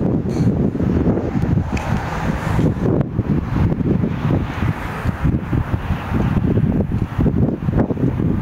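Wind buffeting the camera's microphone: a low, uneven rumble that rises and falls in gusts.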